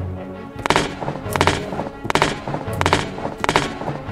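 Five heavy stomps about three-quarters of a second apart, a giant's footsteps sound effect, laid over background music with a sustained low bass.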